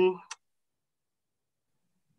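A drawn-out spoken 'um' trailing off, a single short click, then dead silence as the video-call audio drops out: the caller's connection is freezing.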